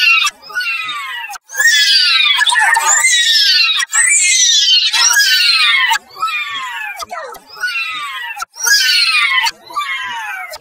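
A high-pitched character voice saying 'No', run through pitch and vocoder effects and repeated over and over. Each 'no' slides steeply down in pitch; some are clipped short and others drawn out for a second or more.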